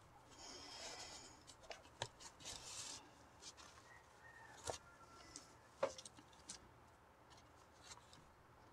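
Faint rustling of nylon paracord being pulled and threaded through the drum's lacing by hand, with a few light clicks.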